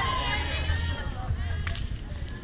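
Players' voices calling out on an outdoor sand volleyball court after a point, the last high shout trailing off in the first moments, then fainter voices over a low steady rumble.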